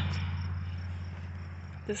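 A low, steady engine hum that fades away gradually, like a motor vehicle moving off into the distance.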